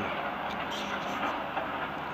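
Steady distant city background noise, an even hum with no distinct events.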